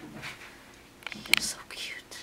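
A person whispering softly, with a short sharp click a little past a second in.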